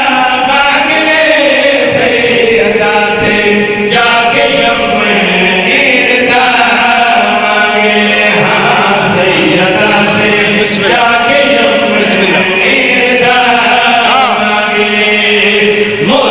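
Several men chanting a devotional chorus together into microphones, in long held phrases that follow one another without a break.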